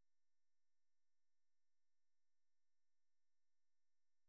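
Near silence: only a very faint steady electrical hum from the recording.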